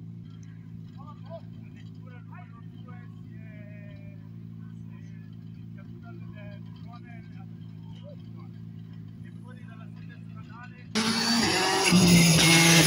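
A car engine idles steadily under faint, scattered voices of people talking. About eleven seconds in, a much louder rally car engine cuts in, revving as it comes closer.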